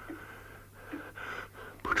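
A man's weak, laboured gasping breaths: an actor performing a dying man struggling for air between whispered words.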